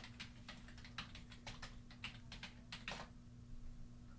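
Faint typing on a computer keyboard: an irregular run of keystrokes, several a second, over a low steady hum.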